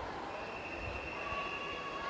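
Long, steady high-pitched whistle tones, with a second, lower tone joining about a second in, over the echoing hubbub of an indoor pool crowd.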